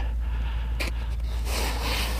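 Breathing close to the microphone, with a breathy exhale near the end and a light click about a second in, over a low steady rumble.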